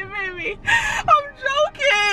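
A person's voice making drawn-out sounds without clear words, sliding up and down in pitch, with a short breathy hiss a little under a second in.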